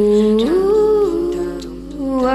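Wordless hummed melody of a birthday song, held notes gliding up about half a second in and fading just before the end.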